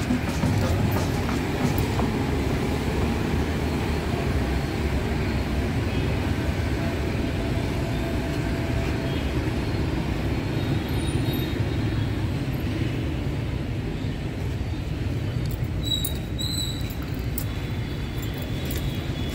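A steady low rumble of outdoor ambient noise, with faint brief high tones about two seconds before the end.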